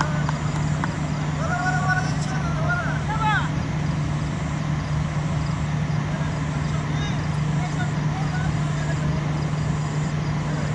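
Open-air cricket ground ambience: a steady low hum over a rough rumbling noise, with players' voices calling out across the field between about one and three and a half seconds in.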